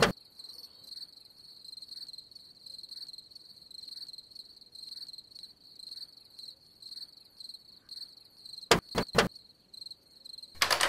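Crickets chirping steadily in a pulsing high trill. Near the end come three quick, sharp knocks, like knuckles rapping on a window.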